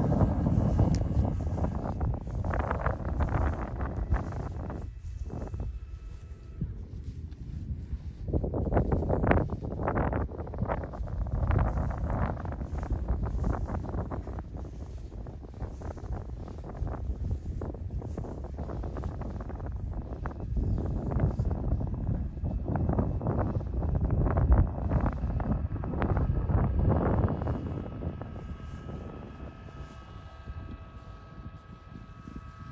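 Wind buffeting the microphone outdoors: an uneven low rumble that swells and drops back in gusts.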